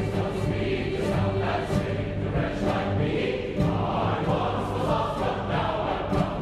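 A large children's and youth choir singing sustained chords with string accompaniment, violins among them.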